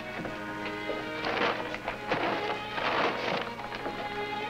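Sustained background music, with three loud bursts of paper crinkling in the middle as a paper sack is handled.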